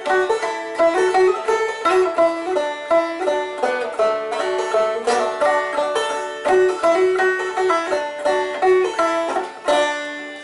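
Banjo picking a lively tune with acoustic guitars backing it, in a dense, even run of plucked notes. The tune ends right at the close, the last notes ringing away.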